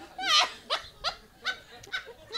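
One person's high-pitched laughter: a loud, squealing, wavering laugh about a quarter second in, then a run of short laughs.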